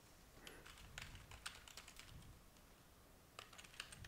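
Faint computer keyboard typing: a quick run of keystrokes in the first half, a pause, then another short run near the end.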